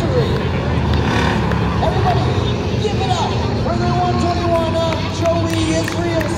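Bomber-class stock cars running on a short oval track, a low steady engine sound, under the chatter of a grandstand crowd.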